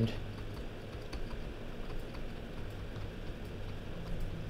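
Stylus tapping and scratching on a tablet screen during handwriting: faint, irregular ticks over a low steady hum.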